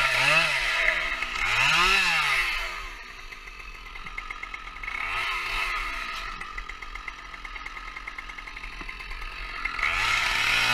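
Two-stroke chainsaw revved up and down twice, dropping to idle, with one short blip midway, then revving up to full throttle at the very end.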